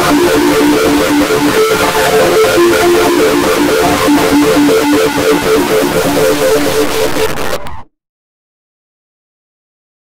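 Logo jingle music, heavily distorted by a 'G Major 22' audio effect: a repeating figure of short notes over a harsh, noisy haze. It cuts off suddenly about eight seconds in, leaving dead silence.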